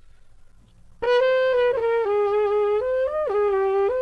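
Trumpet muted with a Denis Wick adjustable cup mute, the cup pushed close to the bell as a practice-mute setting. It plays a short legato phrase of held notes moving by small steps, starting about a second in.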